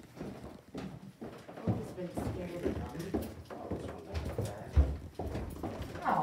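Footsteps on a hardwood floor, an irregular run of knocks with a heavier thump about five seconds in.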